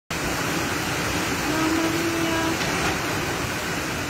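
Floodwater and mud rushing down a narrow street in a steady, loud rush of water. A faint held tone sounds for about a second near the middle.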